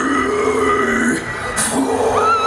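A deathcore vocalist's low guttural growl through the stage PA, held for about a second, followed by a sharp noisy hit a little over one and a half seconds in.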